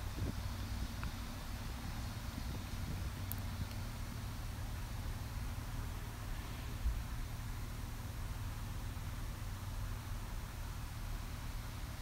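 A steady low rumble with a faint hum, like vehicle or outdoor background noise, with a single soft thump about seven seconds in.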